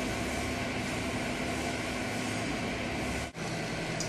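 Steady background hum and hiss with no distinct events, broken by a brief dropout about three seconds in.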